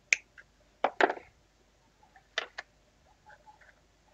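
Sharp clicks and knocks of a hard plastic miniature-kit sprue being handled. There is one click at the start, a louder cluster about a second in, two more a little past halfway, and faint ticks near the end.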